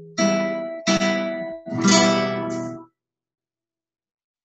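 Nylon-string classical guitar playing an E minor chord in a 'one bass, two chords' waltz pattern: two strummed chords after the bass note on the sixth string, then another stroke about two seconds in. The sound cuts off abruptly to silence near three seconds.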